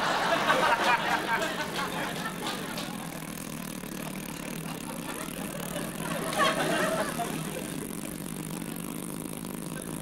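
A long blown raspberry, the tongue between the lips, under studio audience laughter that is loudest at the start and swells again about six seconds in.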